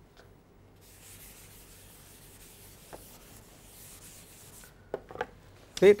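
Faint, steady rubbing on a chalkboard for a few seconds, from chalk or a duster on the board, with a soft tap about halfway through. A man's voice starts just before the end.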